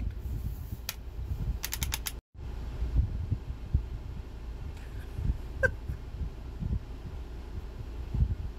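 Low, uneven rumble inside a vehicle cabin, with a few sharp clicks in the first two seconds and one short rising squeak past the middle.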